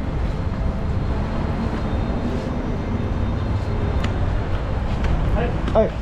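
Steady low rumble and rattle of a loaded airport luggage trolley being pushed along the pavement, with a few faint clicks. A voice breaks in briefly near the end.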